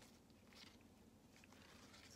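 Near silence, with faint soft rustles of a wet, ink-dyed paper coffee filter being opened out by hand.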